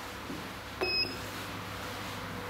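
Elevator landing call button pressed: a click, then a short steady high beep acknowledging the call, under a steady low hum.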